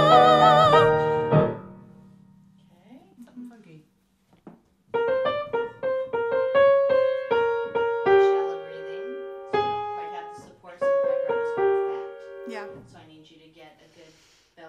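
A woman's voice holds a sung note with wide vibrato over accompaniment, cutting off about a second in. After a few seconds' pause, a piano plays a short passage of single notes and chords for about eight seconds, stopping near the end.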